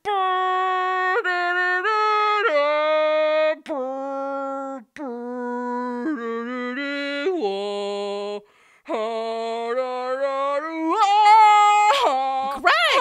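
A single voice singing a graduation tune unaccompanied, in long held notes that step up and down in pitch, with a few short breaks between phrases.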